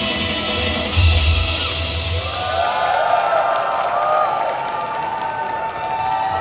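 Upbeat idol-pop music with a heavy bass beat ends about halfway through, followed by the audience cheering and whooping.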